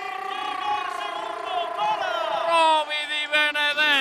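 A commentator's long, drawn-out goal cry: one held vowel that slides slowly down in pitch, with other voices gliding over it in the second half.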